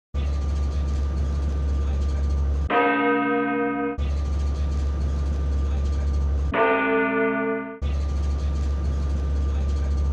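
Steady low rumble of a car's cabin while driving. It is broken twice by a ringing bell chime of about a second, about three seconds in and again near seven seconds, and the road rumble drops out while the chime sounds.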